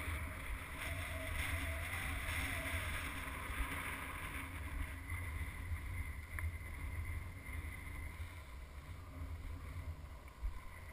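Wind buffeting the microphone: a fluttering low rumble with a steady hiss above it.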